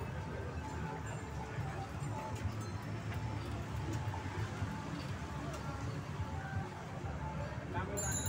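Outdoor street ambience in a moving bicycle parade: a steady low rumble with faint voices and scattered faint sounds in the background, and no single event standing out.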